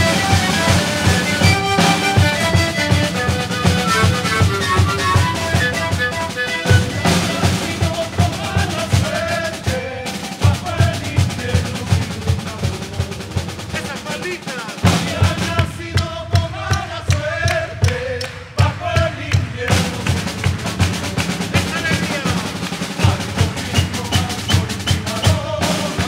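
Sikuri music: bamboo panpipes (sikus) playing the melody over a steady beat of large bombo bass drums and a snare drum. The drum beat drops away for about four seconds near the middle, leaving the panpipes, then comes back.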